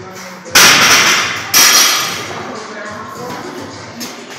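Barbells loaded with bumper plates dropped from overhead onto the rubber gym floor: two heavy crashes about a second apart, each ringing out for a moment.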